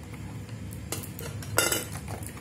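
Coins clinking into a small metal tzedakah tin: a light clink about a second in, then a louder metallic clink with a short ring near the end.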